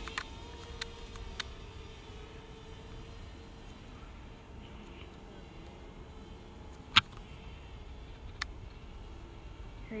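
A camera drone's propellers hum as a steady tone that fades over the first few seconds as the drone flies off. Wind rumbles on the microphone, and there are a few sharp clicks, the loudest about seven seconds in.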